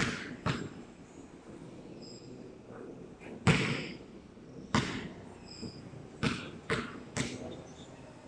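A basketball bouncing on a hard court floor: about seven separate bangs at uneven spacing, each with a short ring after it. The loudest comes about three and a half seconds in, and three come in quick succession near the end.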